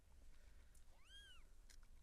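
A newborn kitten gives one short, faint high-pitched mew, rising then falling, about a second in, with a few soft clicks around it.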